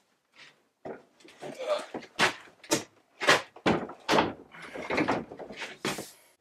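A run of knocks and thumps from a heavy wooden panel door being handled and swung on its hinges, starting about a second in and coming roughly twice a second.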